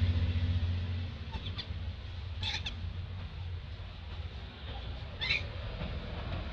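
Outdoor ambience: a low rumble fades during the first second under a steady hiss, and two brief high chirps come about three seconds apart.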